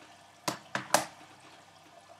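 Plastic Blu-ray cases being handled: three sharp clicks close together about half a second to a second in, the last the loudest.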